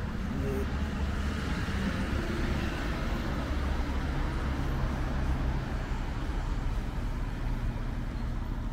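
Road traffic going by on a city street: vehicle engines and tyre noise as a steady low rumble.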